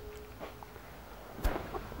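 Quiet workshop room tone with one short, light knock about one and a half seconds in, from the rocker gear just lifted off an old engine's cylinder head being handled.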